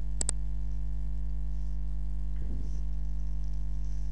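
Steady electrical mains hum with a ladder of overtones, and a mouse button clicked on the login OK button about a quarter second in: two sharp ticks in quick succession.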